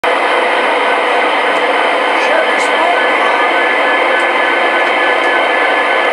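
Model trains running on a large layout: a steady whirring of motors and wheels on track, with a few faint ticks.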